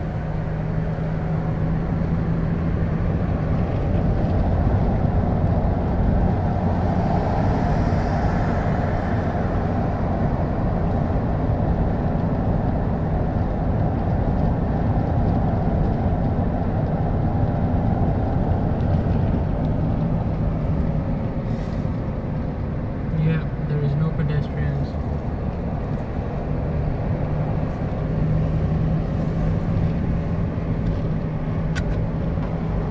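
Steady road and tyre noise with a constant low hum from a car driving at speed, heard from inside the cabin.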